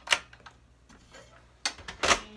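Sharp plastic-and-metal clicks from a vintage Nishijin pachinko machine's glass front door and ball tray being handled and latched shut: one loud click just after the start, then two quick clicks near the end.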